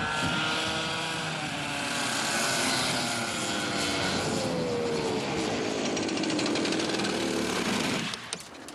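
Go-kart engine running hard as the kart laps the track, its pitch sliding down about halfway through as it comes off the throttle.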